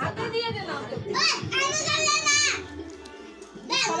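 Children's voices with background music; one loud, high-pitched shout lasts about a second and a half, starting about a second in.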